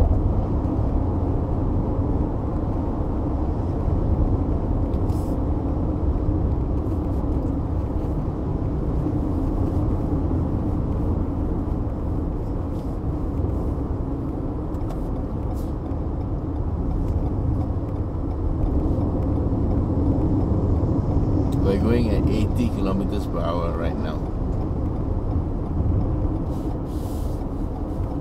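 Steady low road and engine noise heard inside the cabin of a 2020 Toyota RAV4 with a 2.5-litre petrol engine, cruising at an even pace on the expressway.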